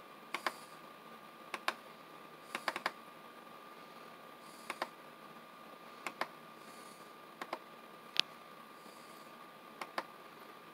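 Computer mouse buttons clicking, mostly as quick double-clicks, about eight times over the stretch, with one sharper single click past the middle. A faint steady high-pitched tone runs underneath.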